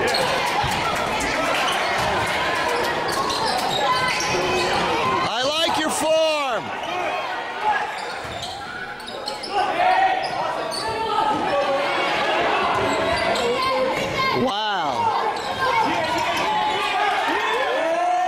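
Basketball bouncing on a hardwood gym court during play, under the steady din of spectators calling out, with sharp knocks scattered through and two brief louder sounds, about six seconds in and again near the end.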